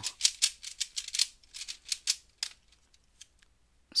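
Stickerless Dayan Zhanchi 3x3 speedcube being turned quickly by hand: a rapid run of plastic clicks and clacks as the layers turn, stopping about two and a half seconds in.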